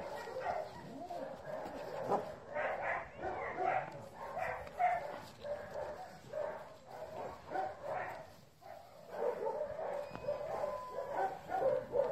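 A dog whining and yipping in quick, repeated short cries, with a brief lull about three quarters of the way through.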